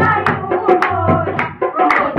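A group of women singing a Shiv bhajan, a Hindi devotional song, to hand-clapping in a steady rhythm several claps a second and a dholak drum.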